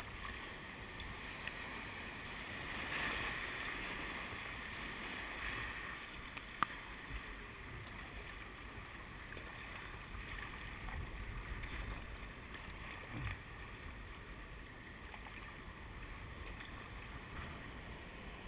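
River water rushing and splashing around a whitewater kayak in a rapid. It is a steady hiss, a little louder about three seconds in, with one sharp click about six and a half seconds in.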